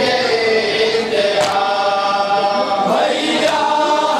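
A group of men chanting a nauha, a Shia lament, in unison into a microphone, holding long notes. A sharp stroke of matam, hand beating on chest, lands about every two seconds.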